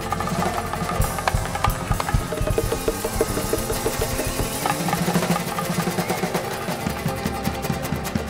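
Live band music ringing on at the end of a song, with a dense, rapid patter of percussive hits throughout.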